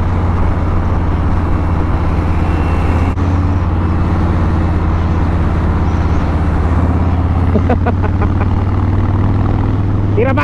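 Motorcycle engine running steadily at highway cruising speed, a constant low drone, with wind and road noise on the microphone.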